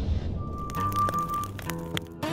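Music and sound effects of an animated logo intro: a deep booming hit fades out, then a single high tone is held for about a second while several sharp clicks ring out.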